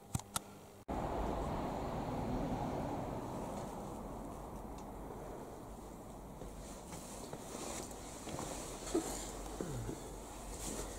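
Steady low rumbling background noise with no distinct events. It starts suddenly about a second in and slowly fades.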